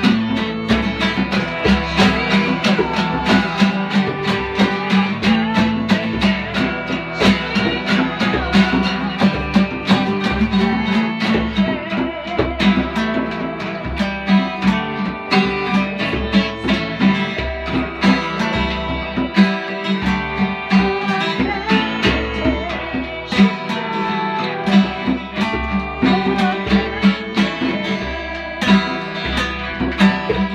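Fiddle and two acoustic guitars playing a tune together, the guitars strumming a steady rhythm under the bowed fiddle melody.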